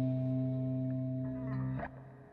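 A guitar's final chord, held and slowly fading, then cut off abruptly near the end.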